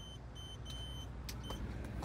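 A car's electronic warning chime sounding a run of short, high, steady beeps, one held a little longer, over a low steady hum in the cabin. Two or three sharp clicks come in the second half.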